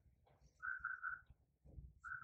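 Faint bird call: a quick run of three short notes at one steady pitch, about half a second in.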